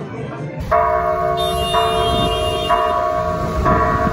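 Church bells ringing from a bell tower, struck several times at uneven intervals, each strike ringing on into the next, over a low street rumble.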